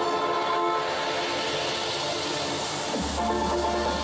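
Live violin and orchestra music holding long sustained chords, with a hiss that swells in the middle and a deep steady bass note coming in about three seconds in.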